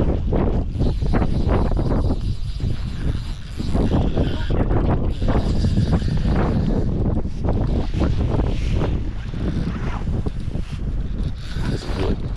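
Wind buffeting the microphone: a loud, steady low rumble with irregular gusty bursts.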